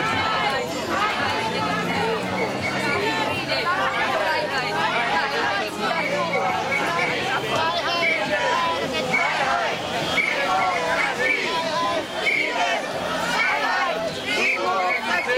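Crowd of people walking together, many voices chattering at once in a steady overlapping babble.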